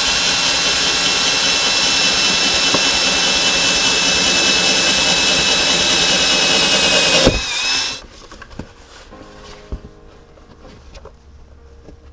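Cordless drill with a one-inch hole saw cutting through the side of a plastic bucket: a loud, steady whine that stops suddenly about seven seconds in. Faint clicks and handling follow.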